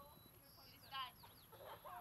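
A bird gives one short, loud squawk about a second in, among fainter chirping calls.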